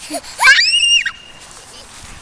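A small child's loud, high-pitched squeal of delight at being chased in play, about half a second long, rising and then falling in pitch.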